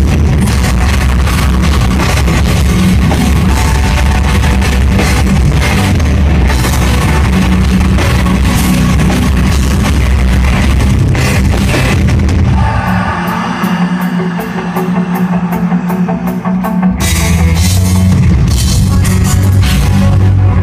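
Metal band playing live through a venue PA: pounding drums, distorted guitars and bass. About two-thirds of the way through, the low end drops away for a few seconds, leaving a guitar line over steady cymbal ticks, about three a second, before the full band crashes back in.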